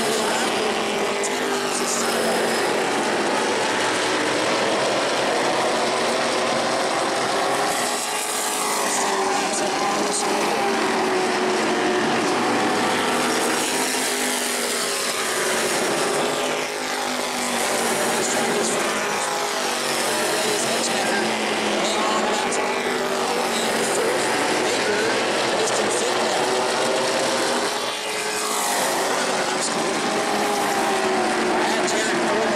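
Engines of several E-Mod race cars circling the short track, their pitch rising and falling as the cars come past and move away.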